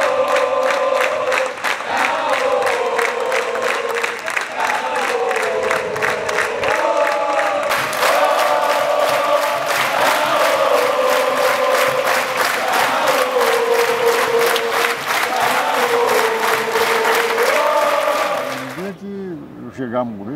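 Football supporters in the stands singing a chant together, keeping time with steady rhythmic hand clapping. The chant cuts off suddenly near the end.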